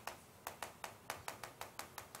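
Chalk writing on a chalkboard: a quick run of light, sharp taps, about five a second, as each stroke of the Korean characters strikes the board.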